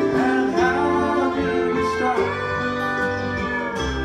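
A country band playing live: a fiddle carries the melody with sliding and long held notes over strummed acoustic guitar and upright bass.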